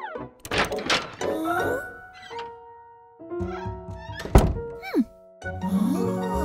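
Cartoon sound effects over background music: a few thuds, the loudest a heavy thunk a little past the middle, followed by a quick sound sliding down in pitch.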